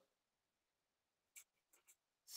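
Near silence, with one faint short scratch of a pen on paper about one and a half seconds in.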